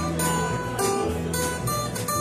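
Country band playing an instrumental break: acoustic guitar strummed in a steady rhythm over a plucked electric upright bass line, with held melody notes on top.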